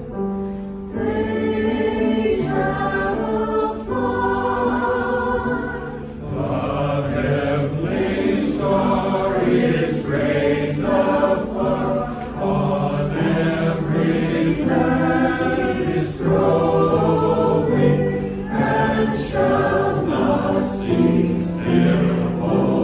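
A mixed choir of men's and women's voices singing in harmony, in long held phrases.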